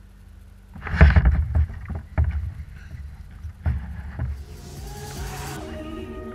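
Hollow knocks and thumps on a kayak hull, carried through the hull-mounted camera as the angler shifts and works his rod: a cluster about a second in, then single knocks roughly a second and a half apart. A brief hiss follows, and music begins near the end.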